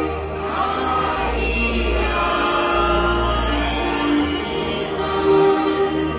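A hymn sung in long held notes over a steady low bass.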